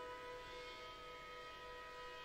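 Contemporary chamber ensemble holding a quiet, steady chord of sustained high tones that do not change.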